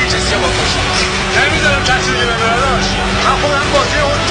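Several voices overlapping, with no clear words, over a steady low drone.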